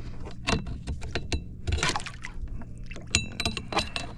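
Clicks and knocks of a fish stringer line and a redfish being handled against a kayak's hull, with a short high squeak about three seconds in.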